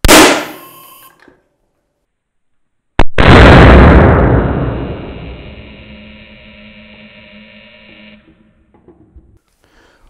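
Loud sharp bang as a spark-gap-switched capacitor bank, charged to about 1,500 volts, dumps into a coil wound around an aluminium drink can and crushes it. About three seconds in a second loud bang follows, lower and drawn out, ringing and fading over about five seconds.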